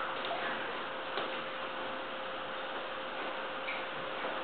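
Steady room noise, an even hiss with a faint steady hum under it, and a few light ticks.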